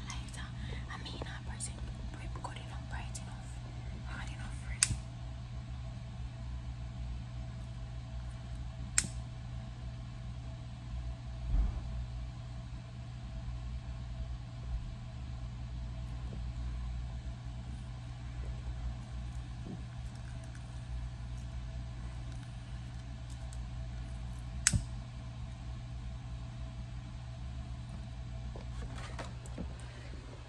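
A handheld lighter being worked to light birthday candles: three sharp single clicks several seconds apart, over a steady low hum and soft whispering.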